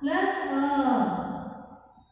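A high voice in one drawn-out, sing-song phrase that falls in pitch and fades out near the end.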